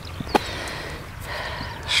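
A single sharp click about a third of a second in as the lid of a crash-damaged motorcycle hard case is pressed down onto its latch, followed by a faint hiss near the end.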